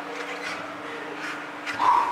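Steady low hum of a gym. Near the end comes one short, loud, strained vocal grunt as the lifter starts a rep on the plate-loaded chest press.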